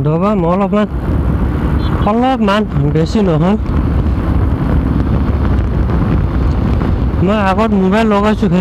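Suzuki Gixxer motorcycle under way at cruising speed: a steady rush of wind over the microphone with the engine running underneath.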